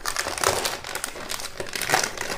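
Metallized anti-static bag crinkling continuously as the new hard disk sealed inside it is gripped and lifted out of its cardboard box.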